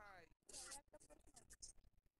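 Faint, brief speech heard over a video call, with a short hiss about half a second in; otherwise near silence.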